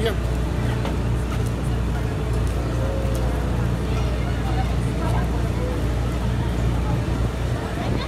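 Steady low engine drone with a regular throb, and faint voices of people around it.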